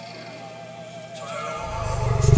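Synthetic soundtrack: a held, wavering tone, joined a little after halfway by a higher tone. A low pulsing rumble swells up near the end.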